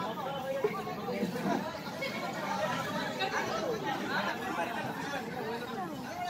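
Several voices chattering over one another, no words clear.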